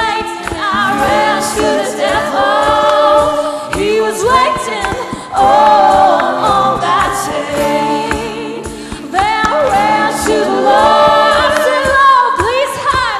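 A woman singing lead vocals in a live acoustic performance of a hymn, accompanied by acoustic guitar, with held notes and vibrato.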